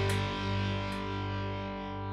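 A sustained guitar chord ringing out and slowly fading away.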